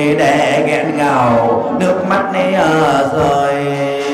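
A man chanting a Vietnamese funeral lament into a microphone, holding long drawn-out notes that bend in pitch, heard through a loudspeaker.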